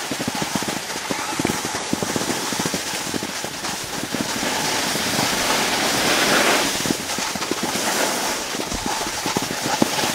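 Steady crackling scrape of skiing over hard-packed snow, with wind rushing on the microphone, a little louder about midway.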